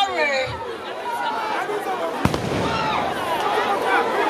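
A woman's voice amplified through a microphone, wailing in lament with long falling pitch glides, over a murmur of crowd voices. A single sharp crack about two seconds in.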